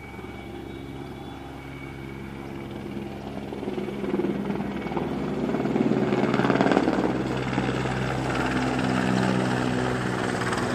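Mil Mi-17-type five-bladed military helicopter flying in and passing nearly overhead, its rotor beat and turbine tones growing steadily louder. It is loudest a little past the middle.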